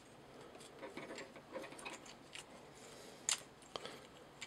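Faint clicks and handling noise from a Mastermind Creations Azalea plastic transforming robot figure as its parts are turned and pressed into place during transformation, with a sharper click a little after three seconds and another just before the end.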